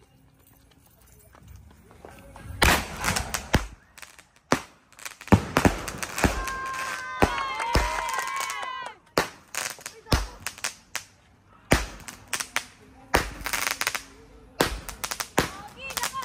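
A multi-shot consumer firework cake firing: it starts about two and a half seconds in and then gives a rapid, irregular string of sharp launch reports and aerial bursts of crackling gold glitter, densest around the middle.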